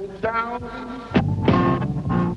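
Electric blues band playing live: held notes over a low bass line, with two sharp drum strokes a little past the middle.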